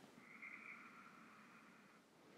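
Near silence: room tone, with a faint soft hiss during the first second and a half.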